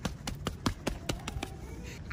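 One person clapping hands quickly in applause, a rapid run of sharp claps.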